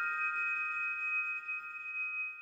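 A single struck chime-like tone, a cluster of clear high pitches, ringing on and slowly fading away.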